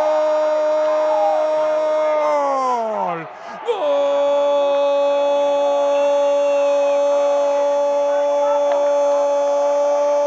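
A male football commentator's long drawn-out goal cry, one vowel held loud on a single note. About two seconds in the pitch sags and drops away as he runs out of breath, then he takes the cry up again on a slightly lower note and holds it.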